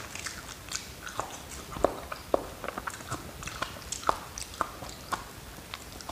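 Close-miked chewing of soft food eaten by hand, with irregular wet mouth clicks and lip smacks, a few of them louder.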